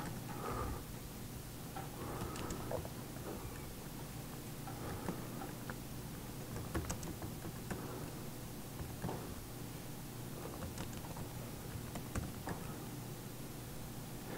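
Laptop keyboard typing: scattered, irregular keystrokes as terminal commands are entered, over a low steady hum.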